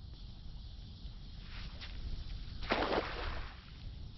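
Steady low rumble of wind on the microphone, with a short noisy rush of sound about three seconds in.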